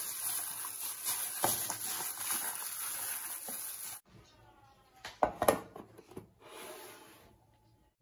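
Plastic glove crinkling and squelching as a hand mixes wet, spice-marinated chicken in a plastic bowl, with small clicks. After about four seconds it cuts to a much quieter stretch with a few short knocks.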